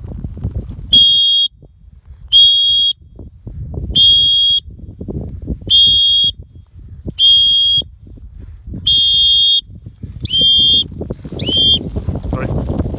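A dog-training whistle blown in eight short, steady, high-pitched blasts about a second and a half apart, the last two sliding down in pitch at the end: a recall signal, with the dog running back in to the handler.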